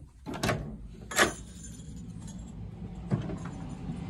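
Handling noise from a phone camera being carried and moved: two brief rattling knocks in the first second or so, then a steady low hum.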